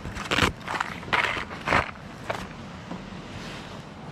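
Plastic lure boxes being picked up off a car's boot lid and packed away, with four or five short knocks and rustles in the first two and a half seconds, then quieter.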